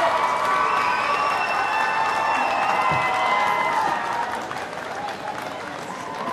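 Crowd cheering and applauding, with held shouts over the clapping; it eases a little after about four seconds.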